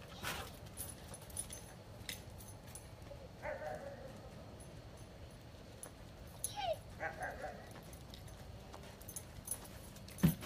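A dog whimpering faintly in two short bouts, about three and a half seconds in and again near seven seconds, the second one sliding down in pitch. Scattered light clicks sound between them.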